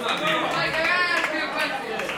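Crowd of spectators chattering, several voices overlapping, with one voice standing out about halfway through.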